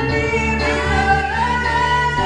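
Several women's voices singing a gospel song live with band accompaniment, in long held notes that slide between pitches.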